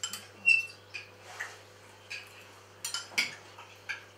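Knives and forks clinking against china plates as several people eat, in scattered light clicks, with one brief ringing clink about half a second in.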